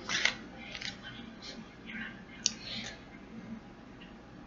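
Paper pages of a picture book rustling as a page is turned and held open: a few soft, scratchy rustles, with a sharp tick about two and a half seconds in.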